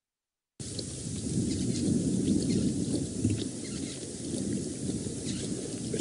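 A lioness lapping water, heard as faint wet clicks over a steady low rumble. The sound cuts out completely for about the first half-second.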